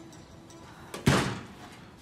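A door shutting with a single thud about a second in.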